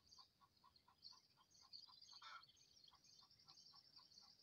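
Near silence, with faint high chirping of outdoor creatures and a soft, regular pip about four times a second.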